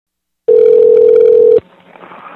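A loud, steady telephone line tone lasting about a second, cutting off suddenly into the faint hiss of an open phone line.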